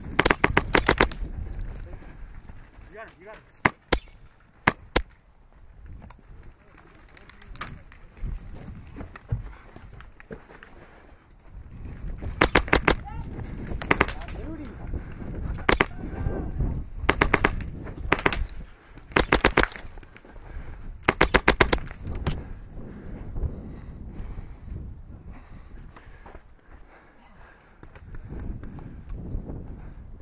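Airsoft rifle firing short rapid bursts of a few shots each: a couple of bursts near the start, then a busy run of bursts in the middle of the stretch, with quieter gaps between.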